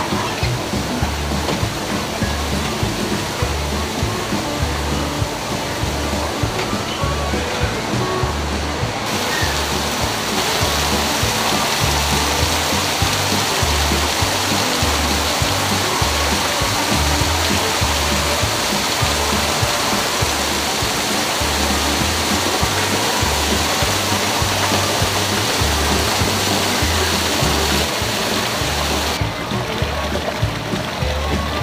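Rushing water from a waterfall, much louder from about a third of the way in and dropping back near the end, under background music with a steady, evenly repeating bass beat.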